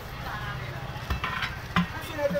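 Steel tyre levers scraping and clinking against the steel rim of a truck wheel as the tyre bead is pried over the rim, with a few sharp metallic clicks in the second half.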